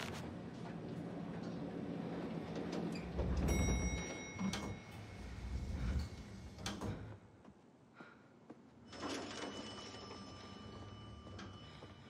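Elevator sounds: a low rumble with a steady high whine for about three seconds from three and a half seconds in, and sliding doors. A second steady high tone sounds from about nine seconds in.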